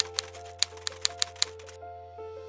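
Typewriter-style key-strike sound effect: a quick, uneven run of about a dozen sharp clicks that stops shortly before the end, over background music with held notes.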